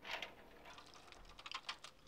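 Faint, irregular ticking and crackling as hot baking soda and salt solution is poured from a plastic measuring jug into an aluminium-foil-lined container.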